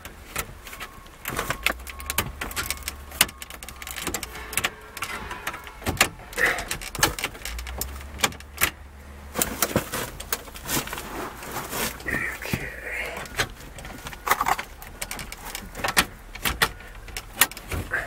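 Wire radio removal keys clicking and scraping as they are pushed into the release holes of a Ford F-150's factory radio and worked to free its retaining clips: an irregular run of small metallic clicks and rattles. In the second half the radio is pulled loose and slides out of its dash opening.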